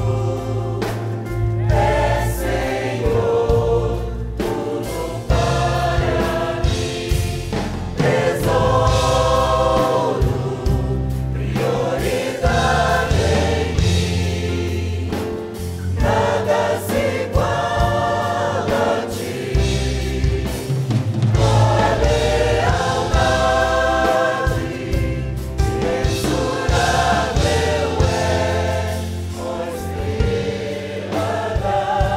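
Mixed church choir singing a Portuguese worship song in phrases of several seconds, accompanied by a keyboard with a sustained low bass.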